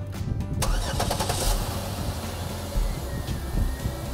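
Car engine starting up about half a second in, then running at a steady idle.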